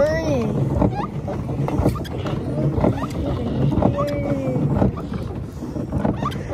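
Pedal-powered paddle boat being pedaled hard: steady low churning from the paddle drive, with short knocks about twice a second. A person makes drawn-out groans of effort, one near the start and a longer one about four seconds in.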